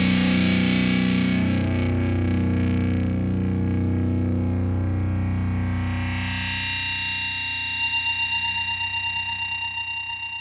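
Nu-metal track: a distorted electric guitar chord is left ringing after the band stops, slowly dying away. About six and a half seconds in, a brighter effect-laden guitar tone swells in, pulsing evenly as it fades.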